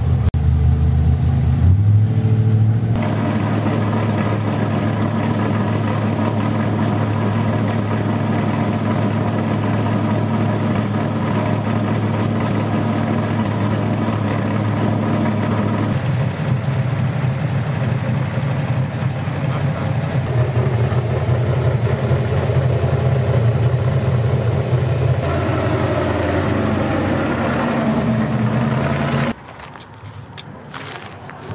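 Off-road race truck engine running steadily, its sound shifting at a few points, then cutting off just before the end.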